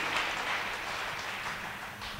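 Congregation applauding, the clapping easing slightly over the two seconds.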